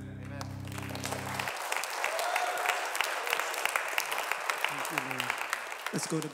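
Congregation applauding after a worship song, over the band's last held chord, which dies away about a second and a half in. A few voices call out near the end.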